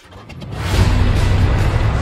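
A car engine swells up about half a second in and runs on strongly, with a low rumble, over music.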